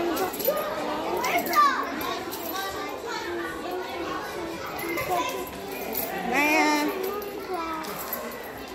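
Many young children's voices overlapping, chattering and calling out at once.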